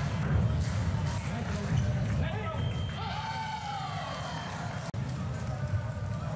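Fencing arena sound during a foil bout: a steady low rumble from the hall, with crowd voices and the thumps of fencers' feet on the piste. A voice rises and falls about three seconds in, and the sound drops out for an instant near the end.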